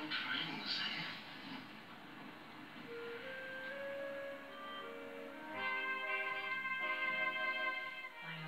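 Television sound: a little speech at the start, then slow single held notes that step upward and swell into a fuller sustained chord about halfway through. This is a drama episode's closing music, running into the end credits.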